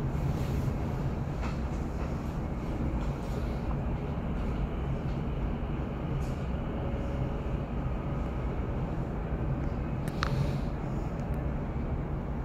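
Running noise inside a moving train: a steady low rumble of wheels on rails, with a few faint clicks and one sharper click about ten seconds in.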